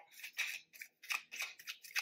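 A deck of tarot cards being handled and shuffled by hand: a quick series of short card clicks and rustles, about five a second.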